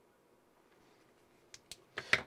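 Near silence: room tone, then two short clicks about a second and a half in, made as small hand-held parts are handled.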